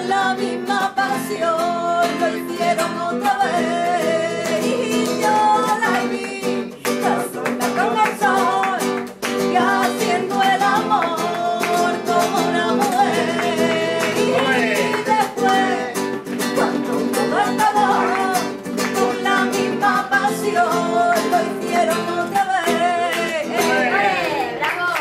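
Acoustic guitar playing, with a voice singing along.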